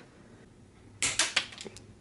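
Wire cutters snipping through a plastic RC driveshaft part: a quiet start, then a quick run of sharp clicks and snaps about a second in.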